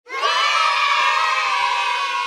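A group of children cheering together, cutting in suddenly right at the start and holding loud, sliding slightly down in pitch.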